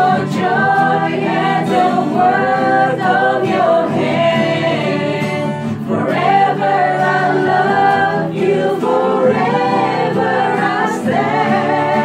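A small group of voices singing a worship song together over a steady instrumental backing.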